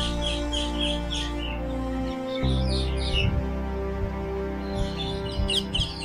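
Background music of slow, sustained chords that change about two seconds in. Over it come three short runs of quick, high bird chirps.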